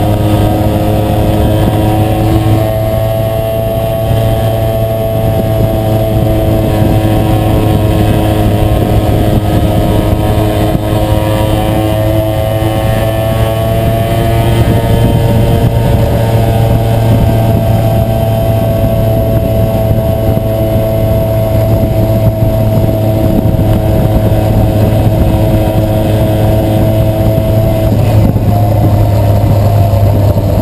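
Tuned 50cc two-stroke engine of a Yamaha FS1 moped, fitted with a big-bore cylinder, a 16mm Mikuni carburettor and a free-flowing 32mm exhaust, running under load at a steady cruise. The engine note holds steady, with only slight rises and falls in pitch.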